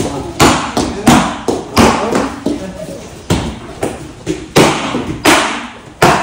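Taekwondo kicks striking handheld paddle kick targets: a run of sharp smacks, about eight in six seconds, coming in quick bursts with short pauses between.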